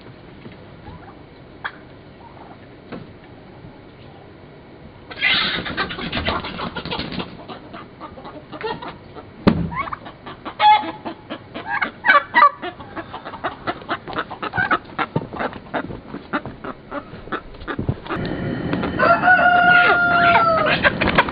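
Chickens squawking and clucking. After a quiet start the squawking breaks out suddenly about five seconds in, then goes on as a run of short, loud calls, with a longer, steady call near the end.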